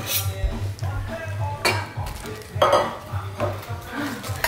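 Metal pots and pans clanking against each other, about four sharp clanks, with ringing after the loudest one.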